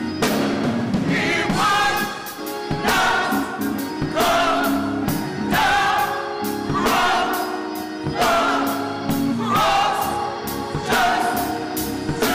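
A gospel vocal group of men and women singing together in harmony, backed by a drum kit and an organ, in repeated rhythmic phrases with regular drum hits.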